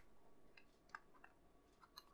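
Near silence with a few faint, short clicks from a small precision screwdriver and tiny screws being handled against a model car's metal radiator part.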